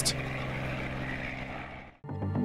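Light helicopter's engine and rotor running steadily in flight, fading out near the end.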